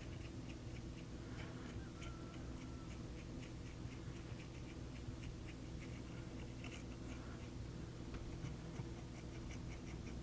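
Small ball bearings from an RC truck's differential spun by hand on needle-nose pliers, giving faint, irregular light clicks, a few a second, over a steady low hum. The bearings are gummy with old grease and soaking in WD-40, and spinning them works them free.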